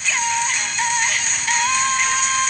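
Pop song playing with a sung melody: a few short notes, then one long held note starting about a second and a half in.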